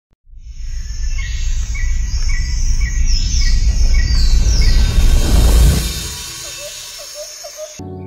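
Nature-sound intro: birds chirping, with a run of evenly repeated calls about two a second and higher falling whistles, over a deep rushing rumble that swells and then fades about six seconds in. Softer chirps follow, and steady music tones begin right at the end.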